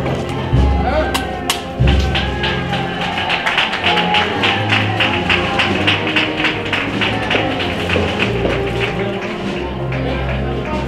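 Spanish processional brass-and-wind band (banda de música) playing a slow Holy Week march, with held brass and wind notes over low bass and a steady drum beat.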